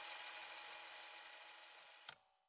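Faint steady hiss with a low hum, slowly fading out to near silence.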